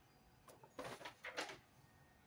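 A sheet of paper handled and lowered: a light tap, then a few short crackling rustles about a second in.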